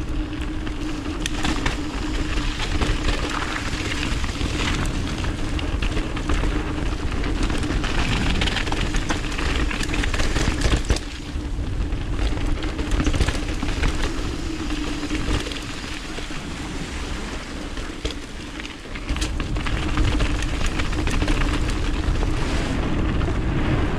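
Mountain bike descending a dirt trail: knobby tyres rolling over packed dirt and loose gravel, with a steady hum and constant clicking and rattling from the bike, over a low wind rumble on the handlebar-mounted camera's microphone.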